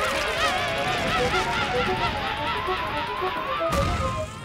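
Cartoon sound effects of a fast-spinning top drilling down into the ground: a warbling whirr and a slowly rising whistle over a gritty rumble of churning earth, cut off by a thump just before the end, with background music.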